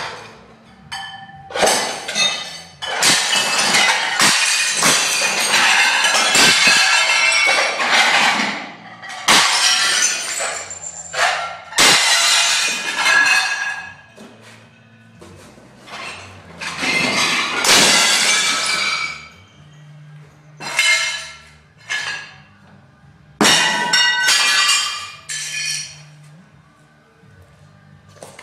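Dishes being smashed: repeated crashes of breaking glass and crockery, with shards ringing and tinkling after each crash. The crashes come in a string of separate bursts, some brief and some lasting several seconds, and stop a couple of seconds before the end.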